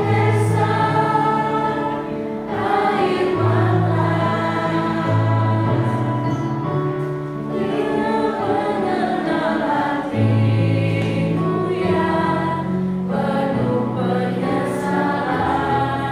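A small group of mostly women singing an Indonesian Christian praise song together, with a keyboard accompaniment holding sustained low notes beneath the voices.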